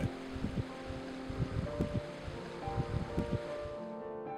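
Meltwater trickling and dripping off a melting snowbank: a steady hiss with scattered small drips, under soft background music of held notes. The water sound cuts off at the end.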